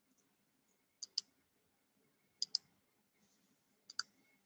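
Three quick double clicks, about a second and a half apart, from a computer mouse, with near silence between them.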